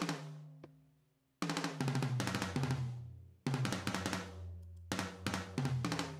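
Programmed drum beat playing back from a music production session: kick, snare and hi-hat hits over a low 808 bass. It stops briefly about a second in, then restarts and plays on.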